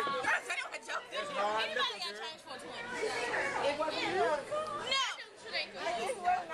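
Several people talking over one another: overlapping conversational chatter.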